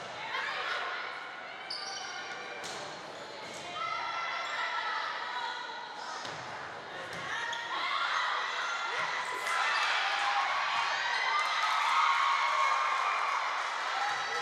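Indoor volleyball rally: a few sharp ball hits against players' and spectators' calls and shouts, echoing in a large gym. The voices grow louder in the second half.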